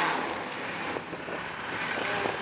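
Car engines running at a drag-strip start line, a steady noise with wind on the microphone.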